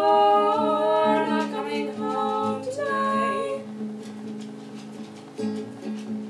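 Two female voices sing long held notes in harmony over a strummed acoustic guitar. After about three and a half seconds the singing stops and the guitar carries on strumming alone, more quietly.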